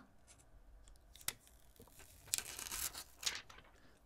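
Backing liner being peeled off a film screen protector: a faint, short rasp of plastic film pulling away from its adhesive about two seconds in, lasting about a second, with a small click just after the first second.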